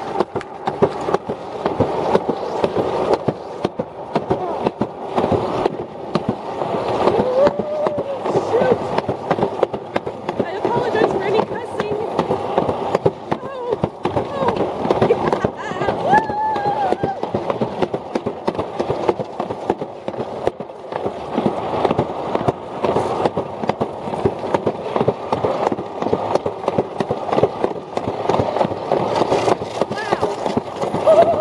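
Alpine slide sled running fast down its trough track, a continuous dense rattling rumble of the sled on the track.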